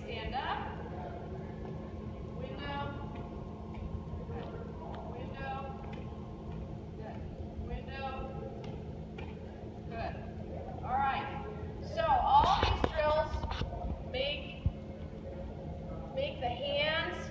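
Short, scattered spoken phrases in a large gym hall, with a few brief sharp smacks of a volleyball on hands. The loudest moment is a burst of voice and contact noise about twelve seconds in.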